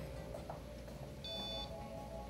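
A single short electronic beep, well under half a second, about two-thirds of the way through, over faint background music and a steady low hum.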